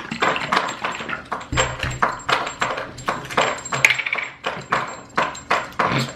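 Dog lapping water in a steady rhythm of about three laps a second, its collar clinking as it drinks.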